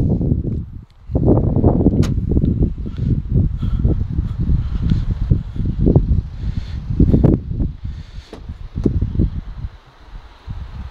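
Wind buffeting an outdoor microphone, an uneven low rumble with handling noise as it moves, and a sharp click about two seconds in.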